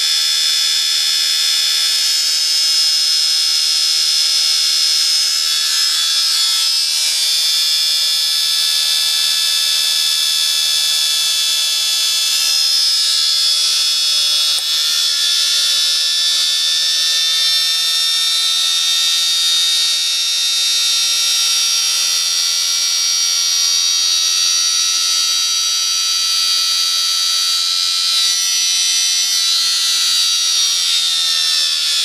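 Small brushed electric motor running steadily, giving a high-pitched whine with brush buzz, its pitch drifting slightly now and then.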